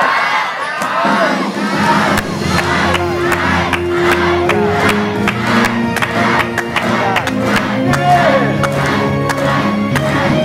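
Studio audience cheering and clapping over game-show music with held notes and a steady beat.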